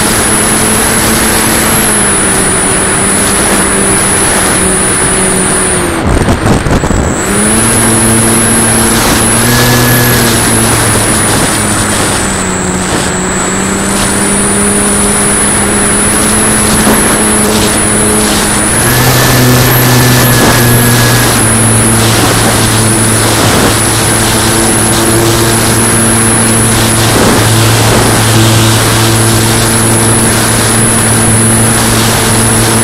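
Electric motor and propeller of a Flyzone Switch RC plane, heard from its onboard camera under steady wind rush. The motor's whine dips in pitch about six seconds in, with a brief crackle. It dips again around twelve seconds, then climbs back up and runs steadily.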